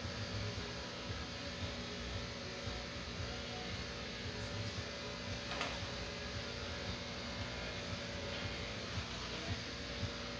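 Steady hum of a small electric fan running, with a single faint click about five and a half seconds in.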